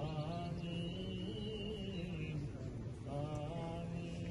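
A man's voice chanting an Arabic religious invocation (salawat, blessings on the Prophet), in long, wavering, melismatic held notes. Two phrases: the first ends a little past two seconds in, and the second begins about a second later.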